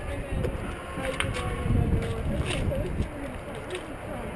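Indistinct voices of people nearby over a low, fluctuating rumble, with a few sharp clicks about a second in, around the middle and near the end.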